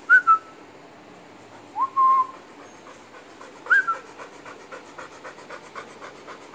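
Three short whistled calls, each rising quickly and then holding briefly, followed by a dog's quick, rhythmic panting.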